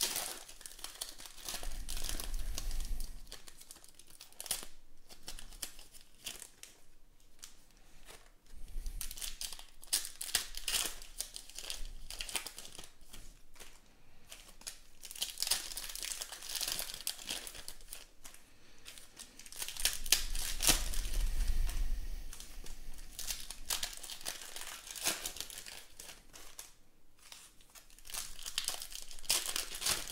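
Foil wrappers of Panini Contenders football card packs being torn open and crumpled by hand. The crinkling comes in louder bursts several seconds apart.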